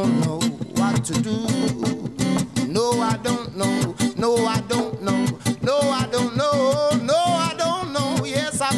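A live reggae song: acoustic guitar strummed in a steady, choppy rhythm, with a man's singing voice coming in about three seconds in on long sliding notes without clear words.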